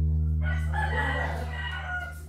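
A drawn-out pitched call, about a second and a half long, starting about half a second in, over the fading low last note of guitar music.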